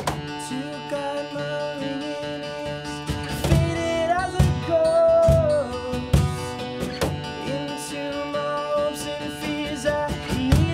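Live acoustic indie-rock song: a steel-string acoustic guitar is strummed and picked while a man sings, holding a long note in the middle.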